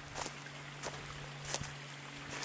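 A few footsteps, about three, crunching on dry leaf litter, over a faint steady rush of water from the nearby spring.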